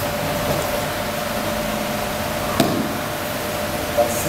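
Steady hiss of room noise with a faint steady hum, broken by a single short thump on the mat a little past halfway as the partner is thrown and goes down.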